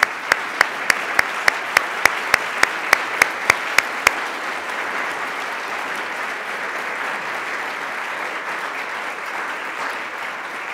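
An audience applauding. For the first four seconds, one person's claps stand out close by, sharp and even at about three or four a second, over the general clapping, which then carries on steadily.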